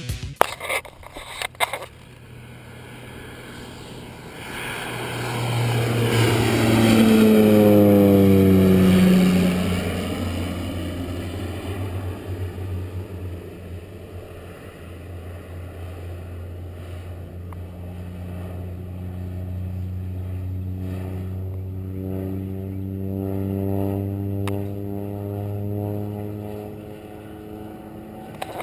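Crop-duster airplane's engine and propeller passing low overhead. The drone swells to its loudest about eight seconds in and drops in pitch as it goes by, then fades. It builds again with rising pitch as the plane comes round.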